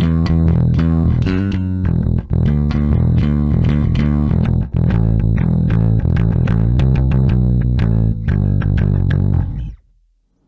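Electric bass guitar played through a Sushi Box FX Dr. Wattson preamp pedal, a HiWatt DR103-style preamp, with its gain at about two o'clock for an old-school rock tone with some grit. A busy run of plucked notes that stops abruptly near the end.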